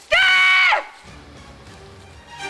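A girl's loud, high-pitched scream, held steady for about half a second and then falling away, over soundtrack music.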